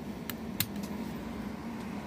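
A nickel being handled and pressed into a slot of a cardboard coin album: two faint light clicks in the first second, over a steady low background hum.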